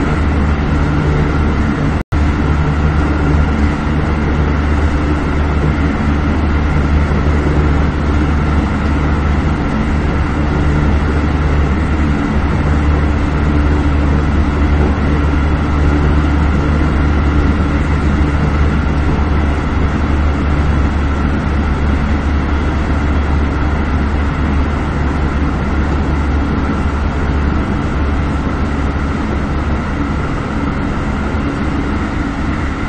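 Keisei 3050-series electric train running at steady speed, heard from inside the driver's cab: a constant low hum with a few steady tones above it. The sound cuts out for an instant about two seconds in.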